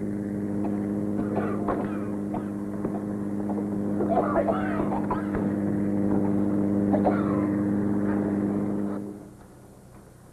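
Steady engine drone with indistinct voices over it, cutting off sharply about nine seconds in.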